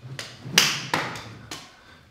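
A wooden kali stick slapping into the palms as it is twirled and passed from hand to hand: four short, sharp taps in two seconds, the loudest about half a second in.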